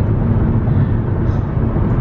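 Steady low road and engine rumble heard inside a car's cabin while it travels at highway speed.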